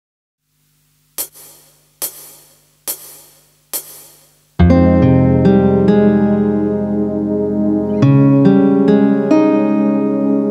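Karaoke backing track with the melody removed: four count-in clicks a little under a second apart, then about four and a half seconds in, a slow accompaniment of sustained keyboard and guitar chords enters in F minor.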